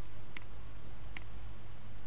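Two sharp computer-mouse clicks a little under a second apart, over a steady low hum.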